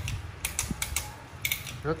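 Shimano Altus rear derailleur shifting the chain across an 8-speed cassette: a run of sharp mechanical clicks as the chain jumps from cog to cog. The shifts are crisp and snappy, a sign of a well-adjusted drivetrain.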